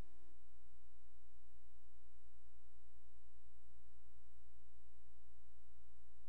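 Steady electrical hum with a constant mid-pitched tone above it, unchanging in level, as from a conference sound or recording system.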